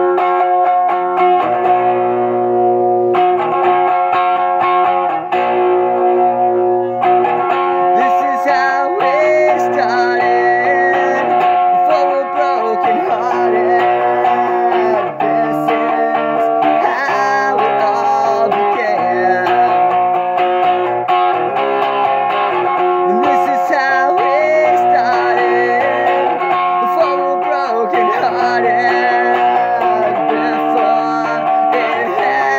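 Electric guitar strumming chords, with a man singing over it from about eight seconds in.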